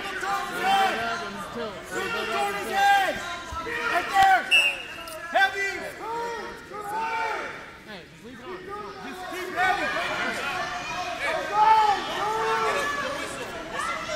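Several people's voices talking and calling out at once, overlapping, with a short lull about eight seconds in.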